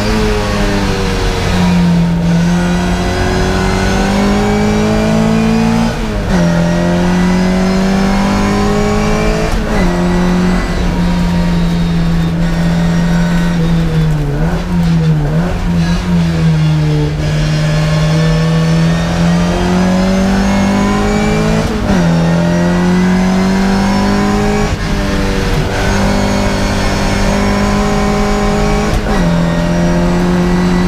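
Classic Mini race car's engine heard from inside the cabin, pulling hard through the gears: the note climbs steadily and drops sharply at each upshift, about every three to five seconds. Midway it falls away for a corner with a couple of quick blips on the downshifts, then climbs through the gears again.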